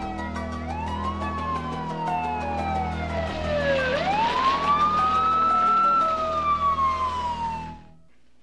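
Ambulance siren wailing, its pitch rising and falling slowly twice in long sweeps, with background music underneath. It cuts off suddenly near the end.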